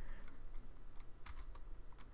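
Computer keyboard typing: a few separate keystrokes as a line of code is edited.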